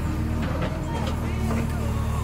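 JCB 3DX backhoe loader's diesel engine running with a steady low drone, heard from inside the cab, with music playing over it.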